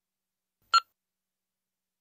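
One short mobile phone keypad beep, a little under a second in.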